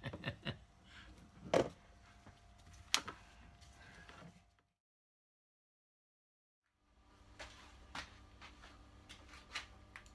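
Handling noises from a motorcycle screen being handled on a workbench: a few sharp knocks and taps, the loudest about one and a half and three seconds in, then about two seconds of dead silence and a run of fainter ticks.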